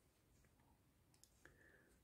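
Near silence with a few faint clicks of metal knitting needles touching as stitches are worked, the clearest a little after the middle.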